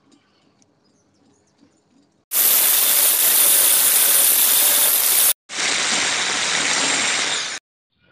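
Angle grinder grinding steel: after about two seconds of faint small clicks, two loud stretches of steady grinding noise, the first about three seconds long and the second about two, with a short break between them.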